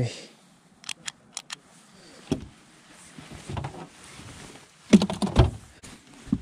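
A handheld metal tally counter clicked several times in quick succession, sharp light clicks, to log a caught fish. It is followed by scattered handling knocks, and a louder cluster of thumps and knocks near the end.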